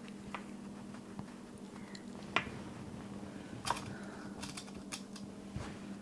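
Light clicks and taps of hands pinning layers of quilt fabric together on a cutting mat: straight pins handled and pushed through the cloth, with a quick run of several clicks past the middle. A steady low hum runs underneath.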